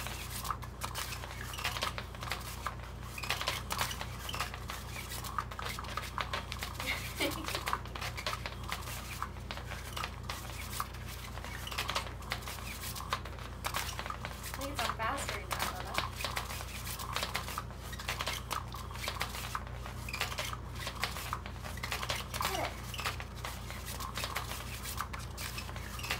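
Battery-powered Cat's Meow electronic cat toy running: its motor sweeps a feather wand around under the nylon cover with a steady low hum, a constant clatter of small clicks and rustling fabric.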